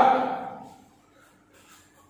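A man's sharp kiai shout of 'Yeah!' delivered with a kick. It fades out over about half a second into faint room sound.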